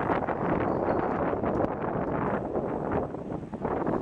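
Wind buffeting the microphone of a camera carried on a moving road bike in a group of cyclists: a steady, loud rushing noise with a few faint clicks.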